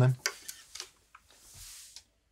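A few faint light clicks, then a soft high hiss that cuts off abruptly at the end.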